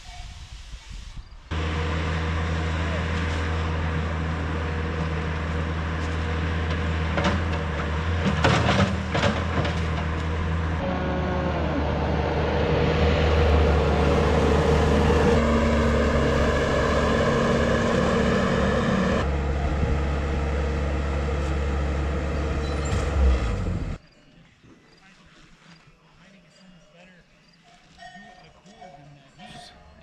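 An engine running steadily under people's voices, in several stretches that change abruptly, with a few sharp knocks. It cuts off suddenly near the end, leaving only faint outdoor sound.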